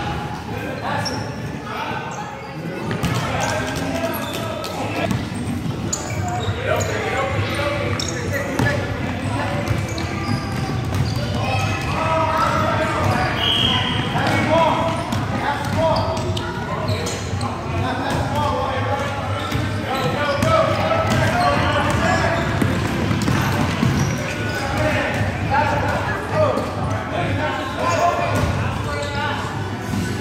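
Basketballs bouncing on a hardwood gym floor amid continuous children's shouting and chatter, all echoing in a large gymnasium.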